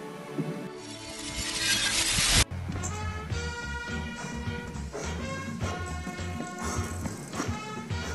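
A rising hiss that swells for nearly two seconds and cuts off sharply, then background music with a steady bass line and held notes.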